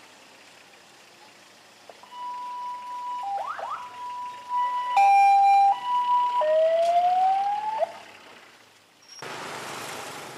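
Ambulance siren sounding as the ambulance pulls away: steady tones that step between a higher and a lower pitch, then a rising wail, stopping about eight seconds in. Just before the end an even rush of wind and traffic noise cuts in.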